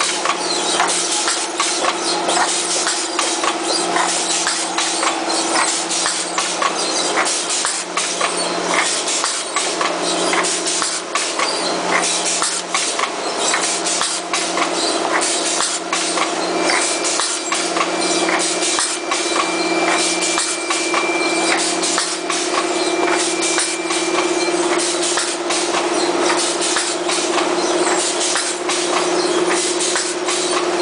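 Patch-handle plastic bag making machine running: a steady mechanical hum with fast, irregular clicking and knocking from its rollers and sealing and cutting gear. A thin high whine comes and goes in the middle.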